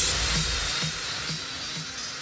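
Electronic backing music dying away: a hissing wash fades out while a low note repeats faintly about twice a second.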